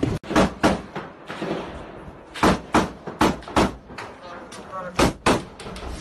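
Gunshots at close range: about ten sharp cracks, mostly in quick pairs a third of a second apart, with pauses of up to two seconds between them.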